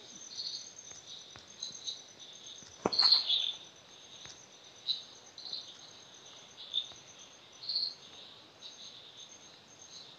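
Faint insect chirping: a high, steady pulsing trill with scattered shorter chirps, and a single click about three seconds in.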